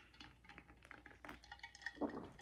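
Faint, scattered small clicks and clinks as a person drinks from an insulated steel tumbler, with sips and handling of the cup and lid.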